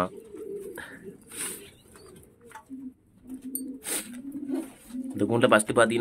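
Domestic pigeons cooing in a loft: several short, low coos through the middle, with a few sharp clicks. A man starts talking near the end.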